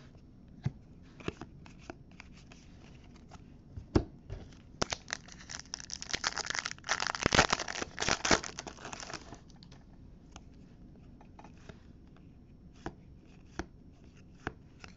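A foil trading-card pack wrapper is torn open and crinkled by hand, in a dense stretch of crinkling from about five to nine seconds in. Before and after it come scattered light clicks of cards being handled.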